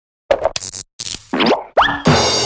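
Cartoon sound effects for an animated logo: a quick run of short pops and hissing bursts, then two rising boing-like glides near the end.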